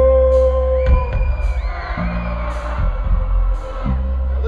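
Live rock band in an arena, heard from the audience: a long held note ends about a second in while the band keeps a steady groove with a drum hit about once a second. Crowd whoops and cheers over the music after that.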